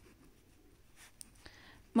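Pen writing on notebook paper: faint scratching with a few light ticks as the letters are formed.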